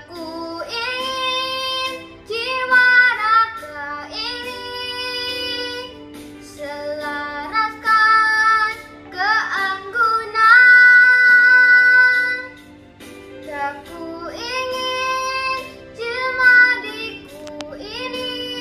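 A young girl singing a solo song with expressive phrasing and several long held notes, over steady instrumental backing music.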